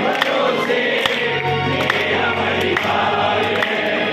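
Live Hindi devotional bhajan music: an electronic keyboard holding low notes, with sharp percussion hits and a group of voices singing.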